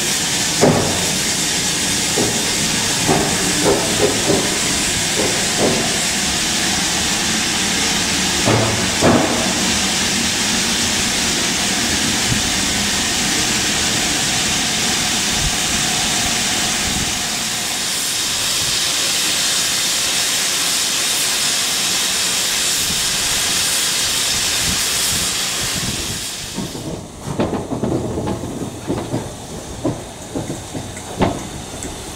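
Steam escaping from a standing steam train in a steady, loud hiss, with a few short clanks in the first nine seconds. The hiss cuts off abruptly near the end, leaving quieter, uneven lower sounds.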